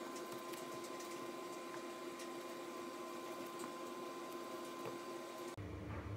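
Faint rustling and light ticks of cotton tea towels being handled and tucked over bowls, over a steady low hum. Background music with a low beat starts near the end.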